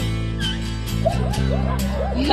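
Background music with a steady accompaniment, and from about halfway in a small dog vocalizing in high, wavering calls that rise and fall, head raised while its chest is scratched.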